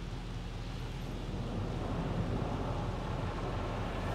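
Soft-touch automatic car wash heard from inside the car: a steady rush of water and soap foam over the windshield over a low machinery hum, growing a little louder about halfway through.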